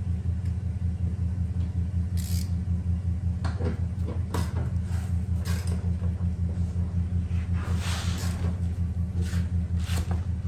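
A steady low machine hum runs throughout. Scattered light clicks, knocks and rustles come from hands and tools working at a car door.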